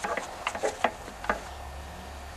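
A few light metallic clicks and ticks as a steel feeler gauge is slipped between the breaker points of a 3.5 hp Briggs & Stratton engine to check the gap.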